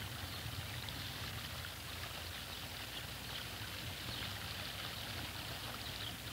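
Faint, steady hiss with a low hum under it, the background noise of an old film soundtrack.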